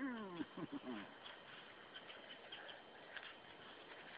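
A husky's paws scratching faintly at dirt as it digs, heard as soft scattered scrapes. A few brief vocal sounds come in the first second.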